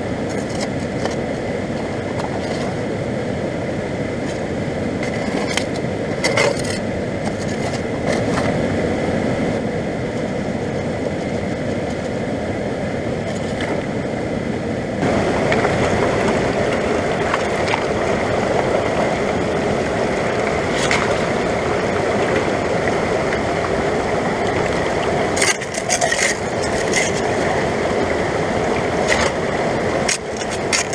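Fast-flowing mountain stream rushing over rocks, growing louder about halfway in. Scattered clicks and knocks of stones sound now and then as gravel is worked by hand in a small metal sluice box set in the current.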